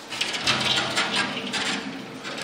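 Leather sandals clattering and scraping against a glass display shelf as they are handled and pulled off: a rapid run of clicks lasting about a second and a half.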